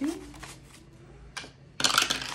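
Bank notes rustling softly as they are handled, then a die clattering loudly down a small dice tower near the end.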